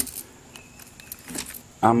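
A sharp click, then faint clicks and light metallic rattling from the aluminium antenna elements and hardware being handled. A man starts speaking near the end.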